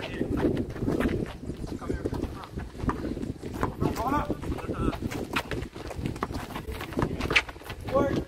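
Basketball being dribbled on a concrete court, a string of short sharp bounces, with players' voices calling out. A steady low rumble of wind on the microphone lies underneath.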